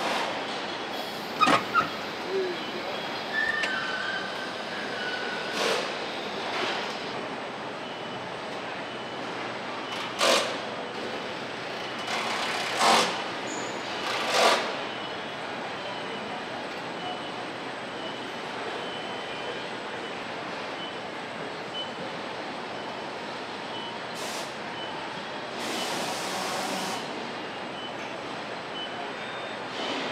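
Car assembly line din: a steady background of plant machinery, broken every few seconds by short, sharp hisses of released compressed air. A brief electronic tone sounds about four seconds in.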